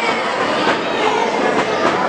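Crowd chatter: many voices talking at once in a steady, loud hubbub.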